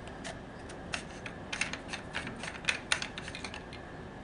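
Irregular clicks and rattles of hard plastic parts as the union nut on a plastic diaphragm valve's true union end is worked loose by hand. The clicks come thickest from about a second in to near the end.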